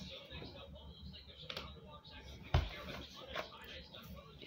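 Faint, indistinct voices with a single sharp thump about two and a half seconds in.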